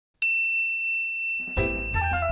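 A single sharp, high bell-like ding that rings on, then music with chords and a bass line starting about a second and a half in.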